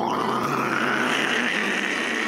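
Cartoon launch sound effect: a loud rushing roar with a whine that rises in pitch near the start, then holds steady.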